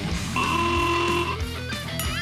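Rock music with electric guitar, a single note held for about a second, then wavering notes near the end.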